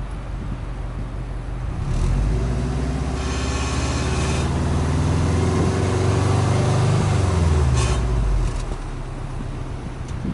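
Subaru Impreza WRX STi's turbocharged flat-four engine, heard at the exhaust tailpipe. It idles, is revved about two seconds in with the engine speed climbing steadily for several seconds, then drops back to idle near the end.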